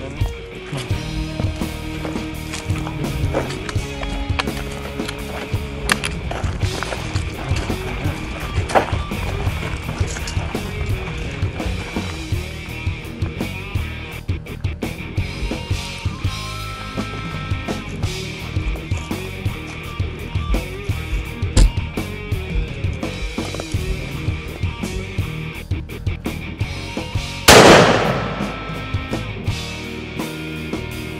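Background music with a steady beat, then a single loud rifle shot near the end that dies away over about a second.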